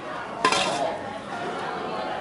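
A single sharp clink of tableware about half a second in, over steady background chatter of diners.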